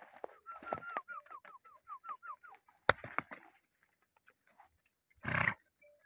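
A bird calling a rapid series of about ten short notes, each falling slightly in pitch, at roughly five a second. A single sharp crack comes about three seconds in, and a short rough burst of noise comes near the end.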